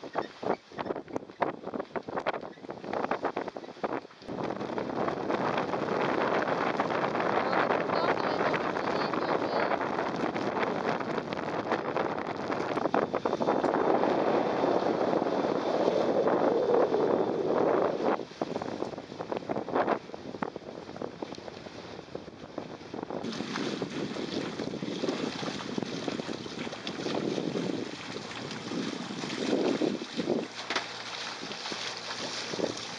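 Wind blowing over the microphone and water rushing along the hulls of a sailing catamaran under way. It comes in gusts at first, then settles into a steadier rush.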